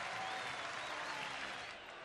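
Ballpark crowd applauding and cheering a walk, fading down near the end.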